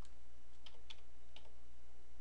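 Computer keyboard keys tapped a few times, four or five separate keystrokes at an uneven pace, over a steady low electrical hum.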